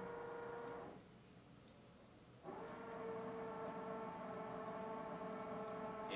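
A steady, faint pitched hum that fades out about a second in and comes back suddenly about a second and a half later.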